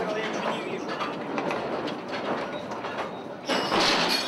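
Mine cars running on rails underground, with continuous metal clatter and rumble. A sudden, louder, harsher burst comes near the end.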